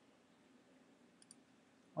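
Near silence: room tone, with two faint, quick high clicks a little after a second in.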